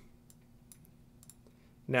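A few faint clicks of a computer mouse button as a desktop icon is selected and dragged.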